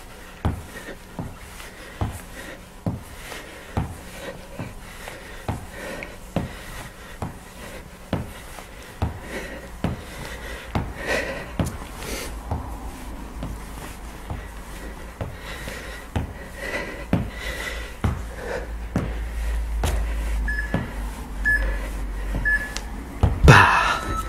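Feet tapping the floor in a steady rhythm of soft thuds, a little over one a second, during cross-body mountain climbers, with panting breath. Near the end come three short electronic timer beeps, then a louder clatter.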